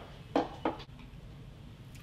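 A woman tasting red wine from a glass: two brief, faint sounds in quick succession, a little way in.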